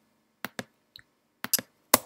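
About half a dozen short, sharp clicks, scattered and faint, from working a computer's controls while editing.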